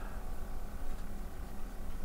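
Quiet open-air ambience on a small sailboat's deck: an uneven low rumble of light wind on the microphone, with a faint steady hum underneath.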